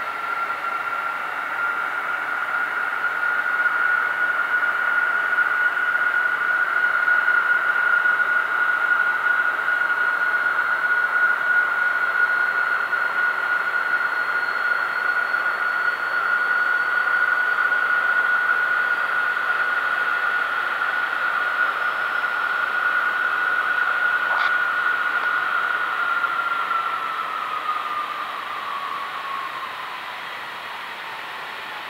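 Jet engines of a Boeing 737-800 (CFM56-7B turbofans) running at raised power, a steady high fan whine over a rushing jet noise, blowing snow off the ground behind the aircraft. Near the end the whine falls in pitch and the sound grows quieter.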